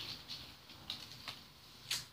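Faint rustling and a few soft ticks from a piece of linen fabric being handled close to the microphone, with a sharper click near the end.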